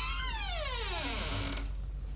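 Descending pitch-swoop sound effect from the background score: a tone with many overtones slides steadily down, holds a short low note and cuts off about one and a half seconds in.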